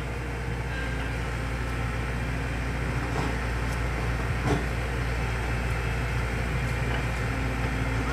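Heavy machinery engine running steadily with a low rumble, with a couple of short knocks about three and four and a half seconds in.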